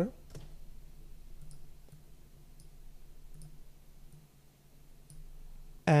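Faint, scattered clicks of a computer mouse and keyboard, about half a dozen over a few seconds, over a low steady hum.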